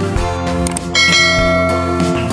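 A bell struck once about halfway through, ringing on over background music with a steady beat.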